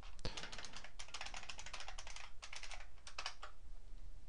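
Computer keyboard being typed on in several quick runs of keystrokes as a web address is entered. The typing stops a little before the end.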